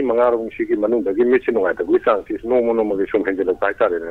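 Speech only: a caller talking continuously over a telephone line, the voice thin and cut off in the highs.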